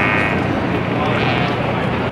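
A man's long, loud fart lasting about two seconds, with a rasping tone at the start.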